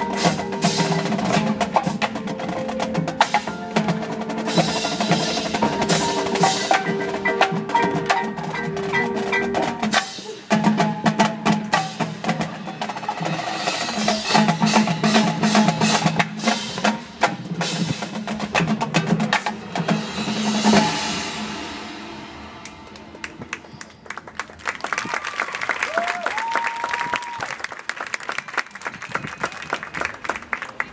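Full marching band playing loudly with heavy percussion: snare drum rolls, drums and mallet keyboards under the winds. About two-thirds of the way through the music releases and dies away, and a crowd applauds and cheers with a few whistles.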